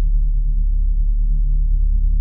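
Deep synthesized bass note of a hip-hop track's intro, held steady and loud with no drums over it.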